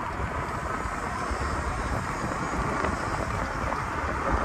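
Wind buffeting the microphone of a phone carried on a moving bicycle: a steady rush with uneven low rumbling throughout.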